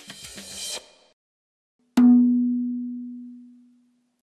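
Percussive music ends with a cymbal-like wash under a second in, and after a brief silence a single loud, deep drum hit rings out, its low tone fading away over about two seconds.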